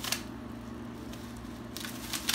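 Clear plastic wrapping crinkling as it is handled, with a short burst right at the start and denser crinkling near the end.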